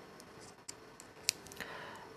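Faint, scattered small clicks and ticks of a motorised fader's metal housing and a flat screwdriver being handled, the sharpest about a second and a quarter in.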